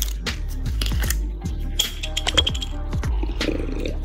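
Background music with a steady beat. Near the end comes a slurp as a bottled protein shake is drunk.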